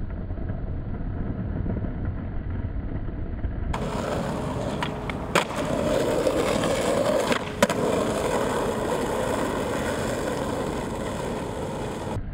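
Skateboard wheels rolling over asphalt in a steady gritty rumble, with two sharp clacks of the board about five and a half and seven and a half seconds in.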